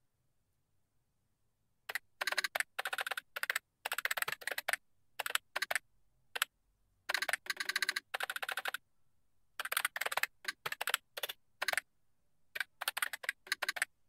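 Computer keyboard typing in quick runs of keystrokes with short pauses between them, starting about two seconds in.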